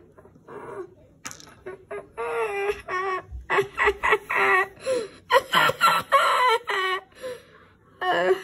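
A child's voice making high-pitched wordless cries in short, broken runs for about five seconds, in a put-on character voice.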